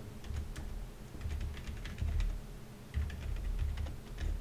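Computer keyboard typing: a run of separate keystroke clicks in small clusters, with short pauses between them.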